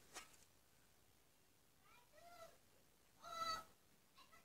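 A cat meowing twice: a faint call that rises and falls about two seconds in, then a louder one a second later. A brief rustle of the circuit board being handled comes at the very start.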